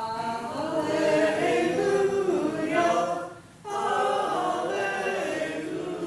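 A group of voices singing a hymn together, with a short break between phrases about three and a half seconds in.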